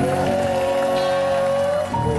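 A singer holds one long, steady note over an instrumental backing track, breaking off shortly before the end.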